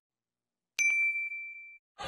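A single bell-like 'ding' sound effect from a subscribe-and-like button animation: one clear chime that starts just under a second in and fades out over about a second.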